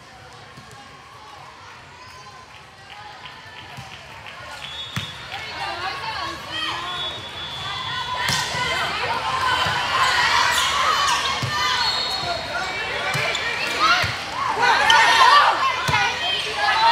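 Volleyball rally in a large indoor gym: a few sharp slaps of hands on the ball, under players and spectators calling and shouting, the voices building steadily louder through the rally.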